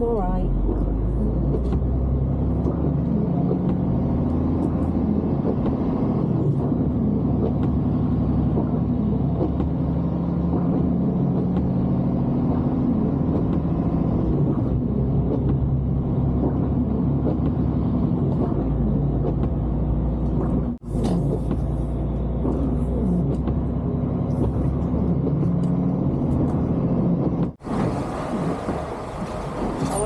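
Heavy lorry's diesel engine running, heard from inside the cab while driving, its note shifting up and down with the revs. The sound drops out briefly twice, about two-thirds of the way through and again near the end.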